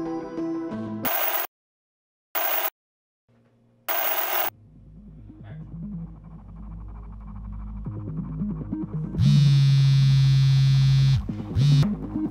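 Synth music cuts off, followed by three short hissing bursts of static separated by silence. A low drone then swells slowly under faint music. A mobile phone rings with a loud buzzing tone for about two seconds, then starts again just before the end.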